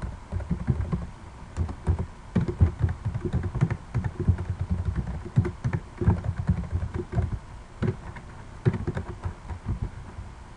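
Typing on a computer keyboard: an irregular run of keystrokes with short pauses between words.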